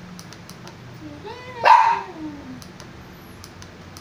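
A single loud vocal call about a second and a half in, its pitch rising into the peak and sliding down after, with a few faint clicks around it.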